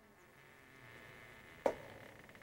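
A faint steady high-pitched buzz, with a single sharp click near the end.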